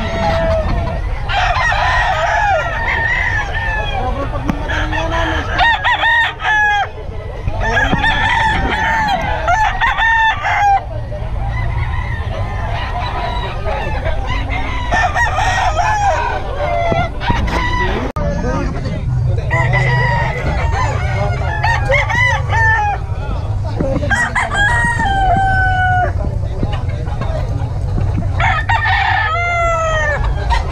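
Several caged gamecock roosters crowing again and again, the calls coming every few seconds and sometimes overlapping, over a steady low background din.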